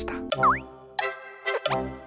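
Short, bouncy children's-style music jingle with a cartoon boing sound effect. The boing is a quick falling-then-rising pitch glide about half a second in, followed by separate notes about every half second and another rising glide.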